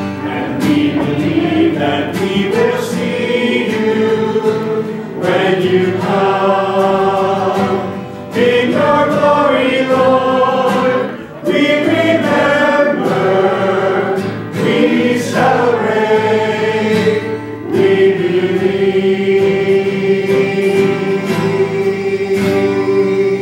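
Church choir and congregation singing the sung memorial acclamation of the Mass in several phrases with short breaths between, ending on a long held note.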